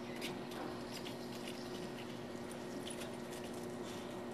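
Steady electrical hum of an American Beauty resistance soldering unit with faint, irregular crackling as current passes through the carbon electrodes clamped on a copper cable lug, heating the lug for soldering.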